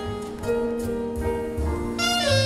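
Jazz band playing live: saxophone holding long notes over double bass and piano.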